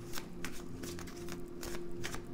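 A deck of tarot cards being shuffled by hand: a quick, irregular run of snapping card edges, over a faint steady low tone.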